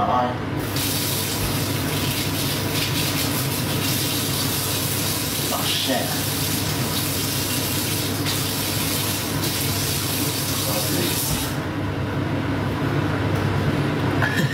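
Kitchen sink tap running hard, water splashing as someone bends over the sink rinsing raw bacon juice out of an eye. The water comes on about half a second in and shuts off abruptly a couple of seconds before the end.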